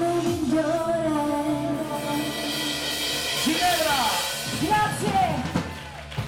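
Live Italian ballroom (liscio) dance band playing, with singers holding long notes that bend in pitch over the band's accompaniment.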